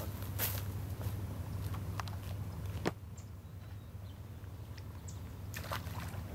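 Footsteps on dry grass and pine needles: a few irregular crunching steps, the sharpest about three seconds in, over a steady low hum.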